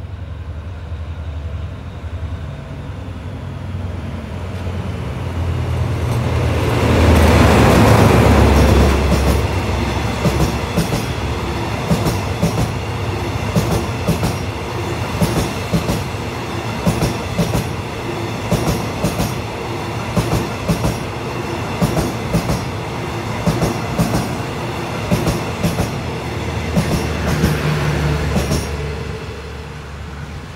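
Hitachi diesel locomotive 4511 hauling a passenger train past: the locomotive grows louder to a peak about eight seconds in, then the carriages go by with a steady clickety-clack of wheels, about one clack a second, fading near the end.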